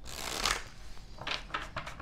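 A tarot deck being riffle-shuffled: a rush of riffling cards lasting about half a second, then several short, quick card strokes.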